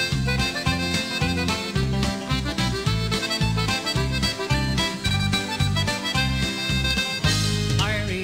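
Background music: an instrumental passage of a country-style Irish ballad about Kerry, with a steady bass beat, between sung verses.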